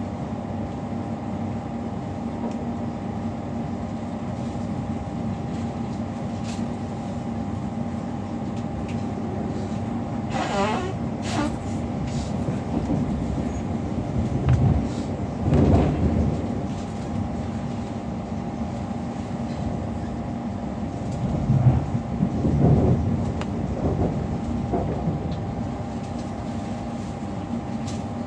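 Interior noise of a Class 345 electric train under way: a steady rumble of wheels on rail with a steady hum from the traction and onboard equipment. A brief wavering high-pitched squeal comes about ten seconds in, and a few louder bumps come around the middle and again later on.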